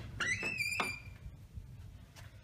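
Interior door swinging open on a squeaking hinge: one squeak about a second long that rises in pitch, then holds steady.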